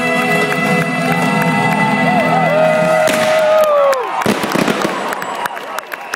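A live band holds a final chord that slides down in pitch about three and a half seconds in and ends. Sharp cracks and whistles from the crowd follow.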